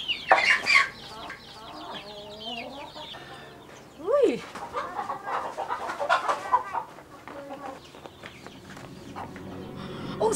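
Chickens clucking, in scattered short calls, with one louder call that rises and falls about four seconds in.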